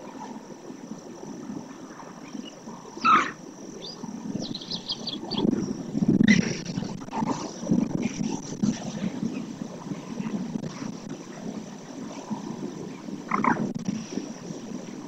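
Wetland ambience: birds calling over a low, steady rumbling background. There is a loud short call sweeping upward about three seconds in, a quick run of short high notes just after it, and another upward call near the end.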